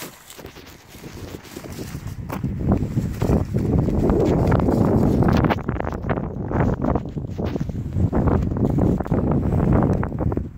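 Wind buffeting the microphone, growing loud about two seconds in, over rustling and scattered scuffing steps on grass and gravel.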